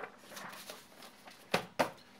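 Handling of a sheet of paper: faint rustling, then two short, sharp paper sounds near the end.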